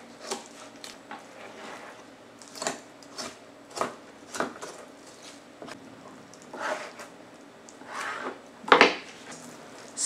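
A knife scraping and cutting along pork rib bones on a plastic cutting board as a rack of spare ribs is freed from a pork shoulder. It comes as irregular short scrapes and light knocks, with a louder knock a little before the end.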